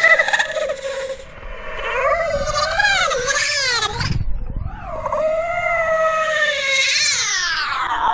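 A wailing, creature-like cry in two long calls whose pitch warbles up and down, with a short break about four seconds in; the second call slides down in pitch near the end. It is a horror-film creature sound effect.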